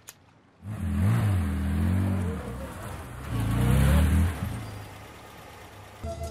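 A car engine revving twice, each rev rising and falling in pitch, then settling to a quieter steady run near the end.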